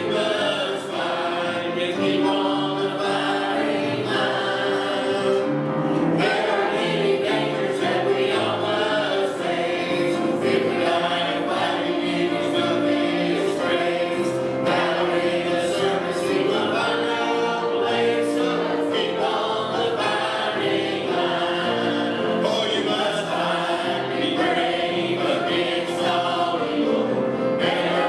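A church choir of mixed men's and women's voices singing a hymn from the hymnal, with a steady held note sounding under the voices.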